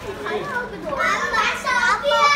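Young children's voices: high-pitched chatter and calls, louder in the second half.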